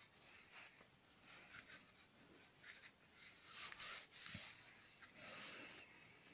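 Faint rubbing of a hand-held pad on a small oak napkin ring, working in a wax finish, in soft irregular strokes that grow busier in the second half.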